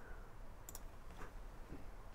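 Faint computer mouse clicks over quiet room tone: one click about two-thirds of a second in and a softer one a little later.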